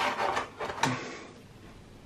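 Clear plastic packaging tray handled as a mini quadcopter is pulled out of it: about a second of rustling with light clicks, and a sharper click a little under a second in.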